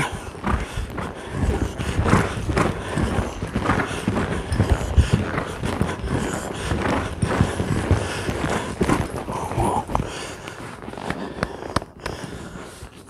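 Horse's hooves striking arena sand as it moves under a rider: a continuous, uneven run of dull thuds.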